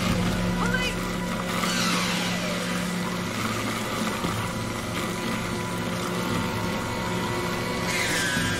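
Gas-engine wood chipper running steadily, a loud constant engine drone and grinding hum.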